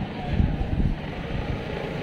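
Busy city-square street ambience: background chatter of passers-by over a low, irregular rumble that swells during the first second.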